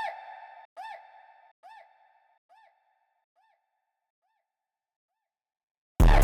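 Echo tail of a delay effect after the beat stops in FL Studio: a short pitched note that rises and falls, repeating about once every 0.85 s and getting quieter each time until it dies away about five seconds in.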